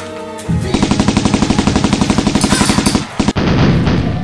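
Machine-gun fire sound effect: a rapid burst of about ten shots a second lasting some two and a half seconds, then after a brief break a louder, denser stretch of fire without separate shots.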